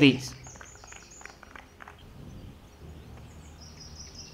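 Faint outdoor background with small birds chirping intermittently, short high calls repeated through the quiet.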